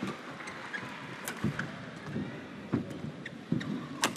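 Badminton rally on an indoor court: a series of sharp racket strikes on the shuttlecock and heavier thuds of players' footwork and lunges, over a steady murmur of the arena crowd.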